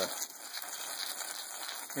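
Water from a hose spraying onto hanging wet sheepskins: a steady hiss and patter.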